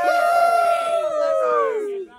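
A young man's long, high-pitched yell, held steady for over a second and then gliding down in pitch, with other voices faintly beneath it.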